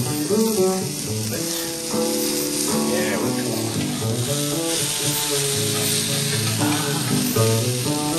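Bacon-wrapped hot dog and sliced onions sizzling in a very hot frying pan, with background music playing underneath.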